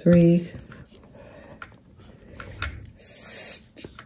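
Game of Life board game play: light taps and clicks of the plastic pieces on the board, with a brief high, hissy rattle a little after three seconds.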